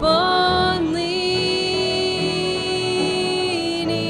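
Small group singing a hymn, women's voices holding one long note, with piano, fiddle, mandolin and acoustic guitar accompanying.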